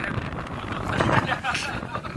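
Men laughing and talking, with wind buffeting the microphone underneath.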